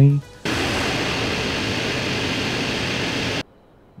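Jet aircraft engine noise dropped in as a sound effect: a steady, loud rushing sound that cuts in abruptly about half a second in and cuts off just as suddenly about three seconds later. It mocks a laptop whose fans sound like an airport runway.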